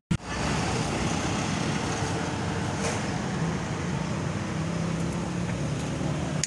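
Street traffic: the steady rush and low engine hum of cars and motorcycles going by on the road, after a brief dropout at the very start.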